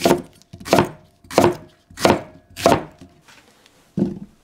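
A kitchen knife chopping a white Japanese leek into chunks on a wooden cutting board: five even cuts, about one and a half per second, each ending in a knock on the board. The chopping stops after about three seconds.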